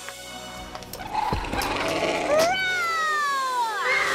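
Screeching call of an animated giant pterosaur: one long cry that starts about two seconds in, rises briefly, then slides steadily down in pitch for over a second, over background music.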